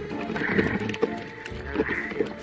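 Background music with steady held notes, with a few short, brighter calls or sound effects over it.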